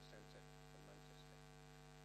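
Near silence, with a steady electrical mains hum underneath.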